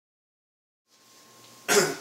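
Silence, then faint room tone from about a second in, then a single loud, short cough near the end.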